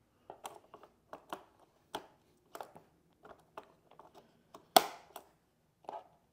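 Hands fitting a round mop pad onto the plastic underside of an Ecovacs Deebot T20 robot vacuum: a string of light, irregular taps and handling clicks, with one louder click a little under five seconds in.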